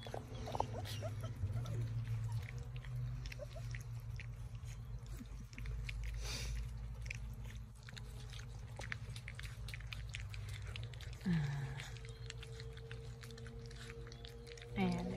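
Cane Corso puppies eating raw ground meat from a stainless steel feeding pan: wet chewing and smacking with many small, irregular clicks.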